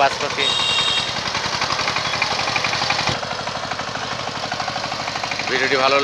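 Two-wheel power tiller's single-cylinder diesel engine running steadily under load while ploughing wet paddy mud, with a rapid, even chugging beat.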